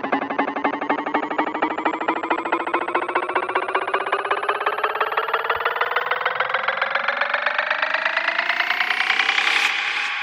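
Progressive psytrance build-up: a pulsing synth riser of many stacked tones climbing steadily in pitch and getting louder, peaking near the end, then dropping back to a fading tail.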